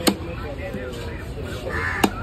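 A heavy fish-cutting knife chops through fish on a wooden block, with one sharp chop just after the start and another right at the end. A crow caws near the end over background voices.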